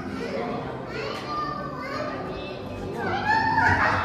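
Children's voices chattering and calling out in a large hall, with a louder high-pitched child's voice about three seconds in.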